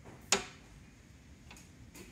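One sharp click from a Tecnostyl 628B drafting machine's drawing head as it is handled, followed by two faint ticks.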